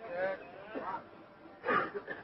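Faint human voices in three short bursts, with honk-like vocal sounds between sentences of a loud public address.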